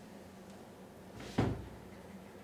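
Quiet room with a low steady hum, and a single thump about a second and a half in.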